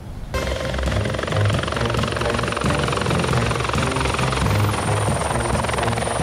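Helicopter running close by: loud rotor noise with a steady high whine, cutting in abruptly just after the start.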